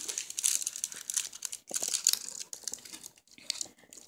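Clear plastic sleeve around a rolled diamond-painting canvas crinkling as it is unrolled and handled, in irregular crackles that thin out near the end.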